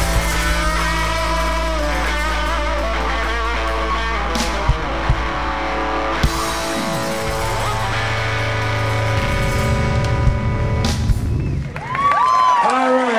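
Live rock band playing an instrumental passage on electric guitars, bass and drums, with held chords and a few sharp drum hits. The music stops shortly before the end.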